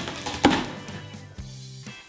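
Brown packing tape being ripped off a cardboard box, with one sharp tearing sound about half a second in that trails off.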